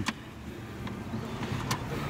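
Steady low rumble of a car's engine and road noise heard inside the cabin, with a couple of light clicks.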